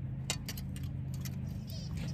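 Faint, irregular clicks and light clinks of hard clear plastic as the flower heads and stems of a solar garden light are handled, over a steady low background hum.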